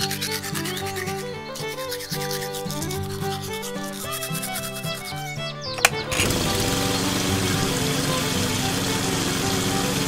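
A toothbrush scrubs the soapy plastic body of a toy tractor in quick, even strokes over background music. About six seconds in there is a click, and a small electric water pump hums up to speed and runs steadily, hissing as it sprays a stream of water over the tractor to rinse it.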